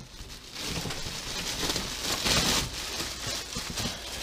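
Clear plastic packaging bag crinkling and rustling as a wrapped fairing piece is handled, a continuous rustle that is loudest a little past the middle.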